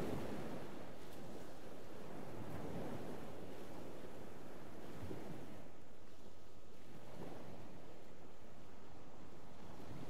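Sea waves surging and washing onto the shore in a steady surf that swells gently every few seconds.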